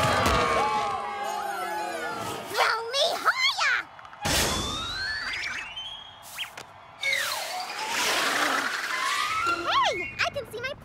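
Cartoon sound effects: a crash as the players pile into a tackle, then bending springy glides and a wobbling boing, a whoosh, and two long rising whistles, the second with a rushing whoosh under it, over background music.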